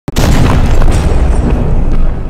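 Cinematic logo-intro sound effect: a deep boom that hits suddenly near the start and rumbles on loudly, with a rushing hiss in the highs.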